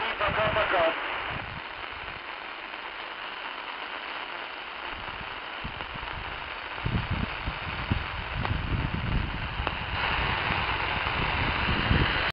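Tecsun PL-450 shortwave receiver on 3130 kHz: a voice coming over the radio ends about a second in, then the loudspeaker gives the steady hiss of static on an empty channel. A low rumble joins the hiss about seven seconds in.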